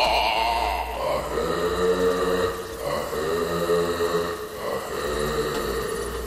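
A man's voice chanting in long held notes, each lasting about a second with short breaks between, like a ritual incantation.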